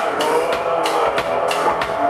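Live rock band playing: a drum kit keeps a steady beat under electric guitars.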